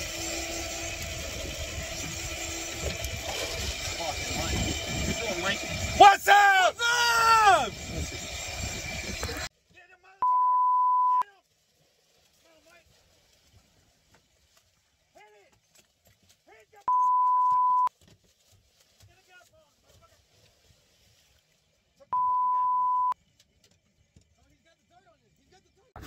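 Boat engine and sea noise run steadily, with a burst of excited shouting about six seconds in. At about nine and a half seconds the sound cuts out to silence, broken by three steady one-second beeps at the same pitch, spaced about six seconds apart.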